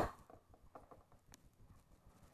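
Small plastic Littlest Pet Shop figures tapped against a wooden floor as they are hopped along by hand: one louder knock at the very start, then faint scattered taps.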